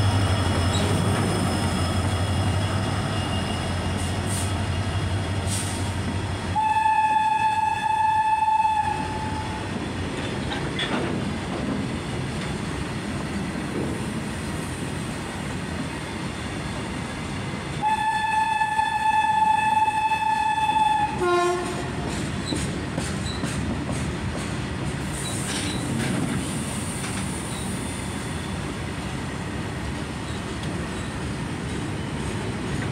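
A freight train of BOST open wagons rolling past behind a WDG4 diesel locomotive, with a steady rumble and wheel clatter; the locomotive's low engine drone fades over the first six seconds or so. A train horn sounds two long single-note blasts, about seven and eighteen seconds in, and the second ends with a dip in pitch.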